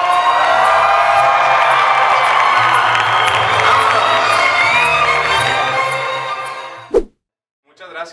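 A mariachi band with trumpets playing live, a man's voice singing over it. The music fades out about six and a half seconds in, followed by a short thump and a moment of silence.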